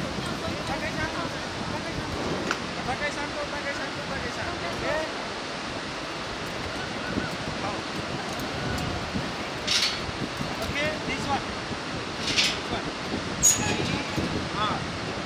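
Steady rush of a fast mountain river with wind, and faint distant voices. A few brief sharp noises come in the last few seconds.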